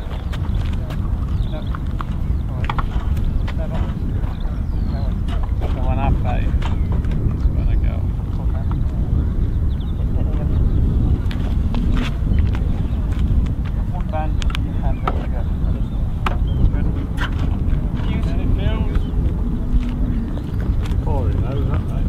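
Wind rumbling steadily on the microphone, with scattered indistinct voices and occasional small clicks and knocks.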